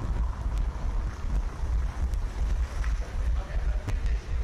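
Wind buffeting a running orienteer's head-mounted GoPro microphone, a rough uneven rumble, with a few faint footfalls on wet stone paving.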